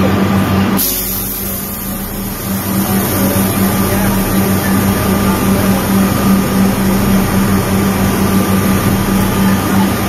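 Steady vehicle and traffic noise with a constant low hum, its tone shifting slightly about a second in.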